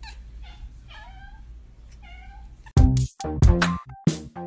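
A black-and-white domestic cat meowing, several short meows that slide in pitch. About three-quarters of the way in, loud electronic music with a heavy beat starts abruptly and becomes the loudest sound.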